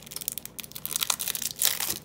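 Clear plastic packaging crinkling and crackling as it is opened by hand to get a magnet out, with a louder burst of crinkling near the end.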